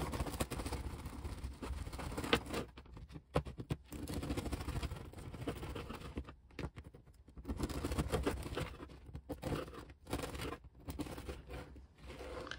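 Serrated bread knife sawing back and forth through a hard, stale bagel on a plastic cutting board, with scraping, crunching strokes. The strokes come in runs with short pauses between them.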